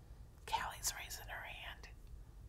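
A woman whispering briefly, starting about half a second in.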